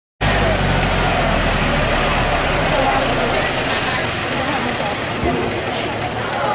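Farm tractor engines running in a covered arena, a low steady drone that is strongest for the first couple of seconds and then fades, with crowd chatter throughout.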